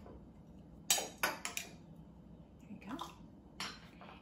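A few sharp clinks of a drinking glass, bunched about a second in, with a softer knock near the end, as mandarin orange segments are put into a glass of water.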